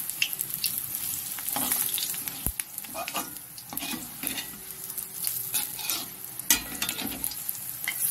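Curry-leaf pakoras sizzling as they fry in shallow oil in an aluminium kadai, turned and pushed around with a metal spatula that scrapes and knocks against the pan at irregular moments, once sharply about two and a half seconds in.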